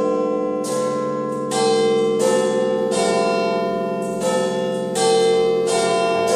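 Music: a slow run of bell tones opening a song, one struck note about every three-quarters of a second, each ringing on into the next.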